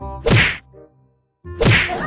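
Two loud whacks about 1.3 seconds apart, each a sharp hit with a short fading tail, as a hand in a costume paw slaps a man on the back.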